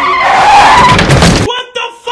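Car tyres skidding and squealing under hard braking, loud for about a second and a half, then cut off abruptly.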